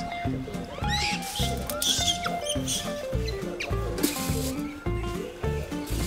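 Background music with a steady beat and held melodic notes, with a few brief high squeaks over it.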